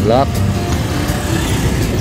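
Street noise of many motorbikes running at a crowded roadside, a steady low rumble.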